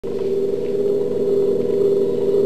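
Steady electronic drone with a fast, even flutter, like the sci-fi spaceship hum in a 1970s TV soundtrack.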